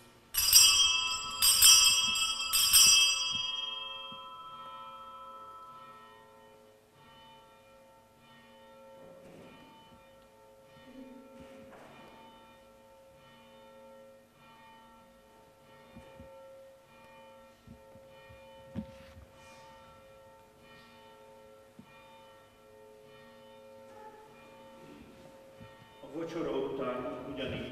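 Bells rung three times in quick succession in the first three seconds, with bright high ringing, then a lower bell tone lingering faintly through the rest. These are the consecration bells of a Catholic Mass, rung as the priest elevates the host.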